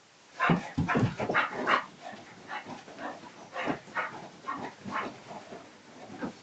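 An English Bull Terrier vocalising in short bursts as it spins around on a bed: a quick run of them in the first two seconds, then single ones spaced out.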